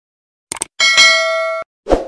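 Subscribe-button animation sound effects: a quick double mouse click, then a bright bell ding that rings for nearly a second and cuts off sharply, then a short thump near the end.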